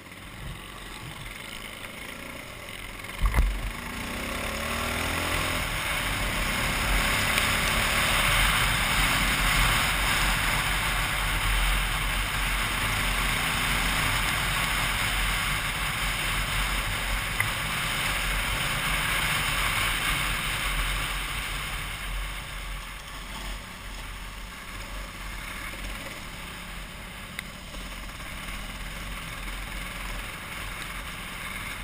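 Dual-sport motorcycle engine running as the bike rides a dirt road, heard from a helmet camera with wind and road noise. There is a sharp thump about three seconds in, and the sound gets louder as the bike picks up speed, easing off again after about twenty seconds.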